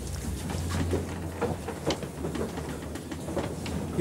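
Footsteps and scattered knocks of a group moving through a stage set, over a steady low hum.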